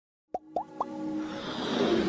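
Animated logo-intro sound effects: three quick pops, each rising in pitch, in the first second, then a swell that builds over a steady low tone.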